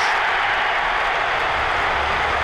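Football crowd cheering a home goal, a steady wash of noise with no break.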